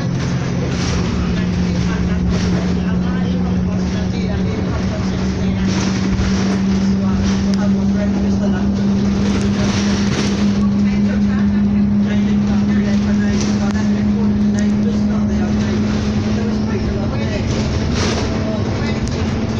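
A bus heard from inside its cabin while it drives: a steady low engine drone over road noise, climbing slowly in pitch as the bus gathers speed, with light interior rattles.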